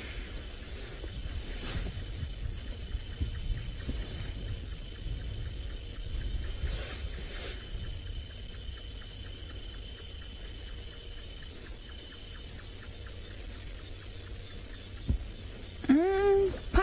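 Open-air ambience with wind rumbling on the microphone, and a thin, steady high-pitched tone that stops about three-quarters of the way through.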